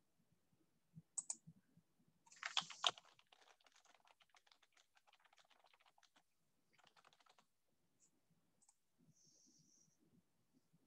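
Faint typing on a computer keyboard: a few keystrokes about a second in, a quick louder flurry around two and a half seconds, then scattered lighter taps and another short run a little past the middle.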